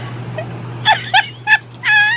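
Chicken squawking: a quick run of four short calls that bend up and down in pitch, starting about a second in, the last one longer and wavering.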